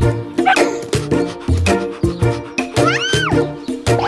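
Children's song backing music, with a cartoon dog's single yelp, rising then falling, about three seconds in.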